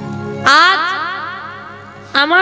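A single loud musical note from the kirtan accompaniment, struck about half a second in, rising in pitch like a boing as it fades away. A steady low drone sits underneath.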